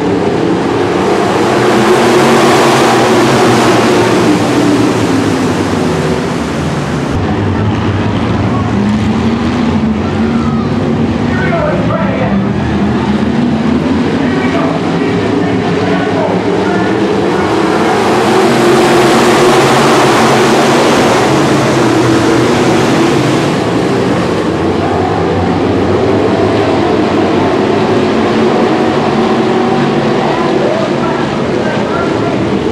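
A field of IMCA Sportmod dirt-track race cars running hard, their V8 engines blending into one loud, continuous sound. It swells about two seconds in and again just past the middle as the pack comes by.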